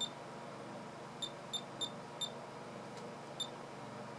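Short, high key beeps from a Sainsmart DSO Note II pocket oscilloscope as its menu buttons are pressed: six in all, one at the start and a quick run of four a little after a second in, then a last one near the end.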